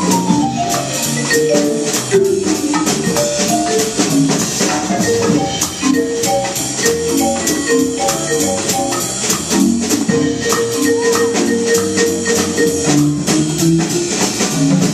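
A jazz quartet plays live: an electric keyboard carries the melody with acoustic guitar, drums and congas. The keyboard opens with a falling run of notes over a steady percussion pulse.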